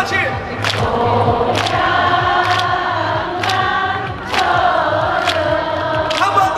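A male singer and a crowd singing together, holding long notes, with a steady beat of sharp strikes about once a second.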